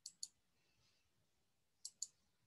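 Two pairs of faint, sharp computer mouse clicks, one pair at the start and another near the end, over quiet room tone.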